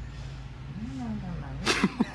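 A person sneezing once near the end, a short voiced rising-and-falling 'ah' leading into it, over a steady low hum.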